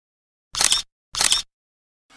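Camera shutter sound effect firing twice, about half a second apart, each a quick double click of the shutter.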